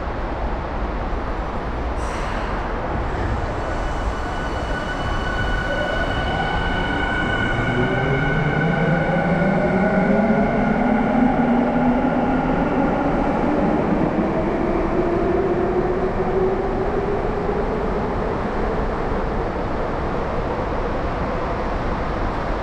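Electric subway train pulling out of the station: its motors whine in several tones that climb steadily in pitch as it gathers speed, loudest about halfway through, over the running rumble of the train. A short sharp noise comes about two seconds in.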